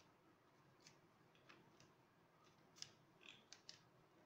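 Near silence with a handful of faint taps and clicks: a rubber script stamp being dabbed on an ink pad and pressed onto paper.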